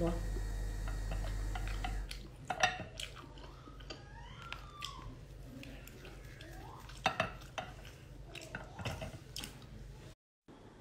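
Close-up eating sounds of a mouthful of cooked sea snail meat in sauce: chewing and wet mouth smacks with scattered chopstick clicks, the loudest about seven seconds in and again near the end. A low steady hum underneath stops about two seconds in.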